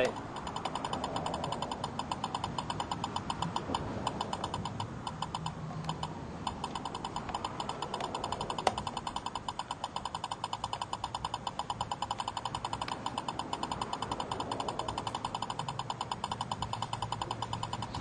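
Stalker Lidar police speed gun sounding a rapid steady train of short electronic beeps, about four or five a second, as it fires at an approaching car, with a single sharp click near the middle. The gun is not locking on: its display reads error E04, a sign of the laser jammer blocking a speed reading.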